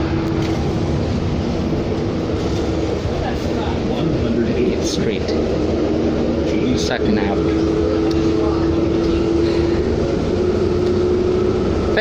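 Cabin noise inside a moving 2007 New Flyer D40LFR diesel bus: a steady low drone of engine and road with a whine that climbs slightly in pitch, and a few sharp clicks of rattling fittings around the middle.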